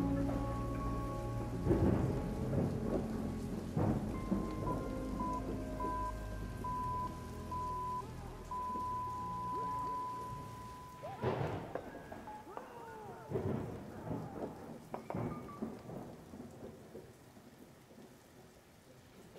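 Soundtrack music of sustained low notes and a held high tone over a steady rain-like hiss and rumble; the music drops away a little over halfway. After that come several short sharp hits, and the sound fades toward the end.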